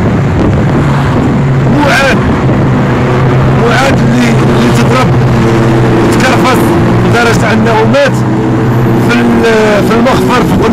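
A man speaking Moroccan Arabic in an impassioned monologue, close to the microphone, over a steady low hum.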